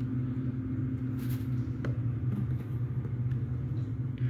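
A steady low hum, with a couple of faint clicks about one and two seconds in.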